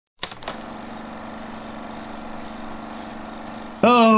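A steady hum and hiss with a low buzzing tone, opening with two clicks. A louder voice cuts in just before the end.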